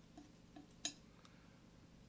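Near silence with three or four faint ticks in the first second, the last one the sharpest.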